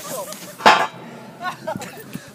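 A single sharp bang from a burning underground manhole, short and loud, about two-thirds of a second in, with people's voices around it.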